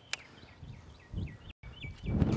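A bird chirping faintly in a series of short, quick notes, with a single sharp click just after the start and a brief low rumble about a second in.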